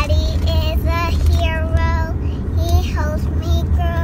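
A young girl singing in short, held phrases inside a car, over the car's steady low rumble.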